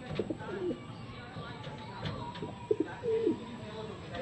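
Domestic pigeon cooing: two low coo phrases, one just after the start and one about three-quarters of the way through.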